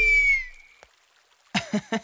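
A high ringing tone fading out within the first half second, then a brief pause before a man starts speaking.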